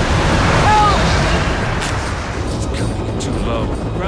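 A loud, steady roar of an avalanche of snow crashing down a mountain, as a film sound effect. A brief cry from a woman is heard under a second in, and a voice near the end.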